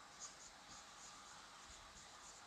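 Faint marker strokes on a whiteboard, with a few soft, short high squeaks scattered through an otherwise near-silent room.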